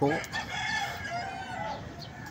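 A rooster crowing faintly, one drawn-out call about a second in.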